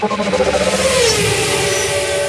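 Car engine revving, its pitch falling about a second in, over a steady hiss of tyre and dust noise.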